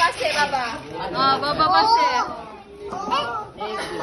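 Chatter of several people, children among them, talking and calling out over one another, with a short lull about two and a half seconds in.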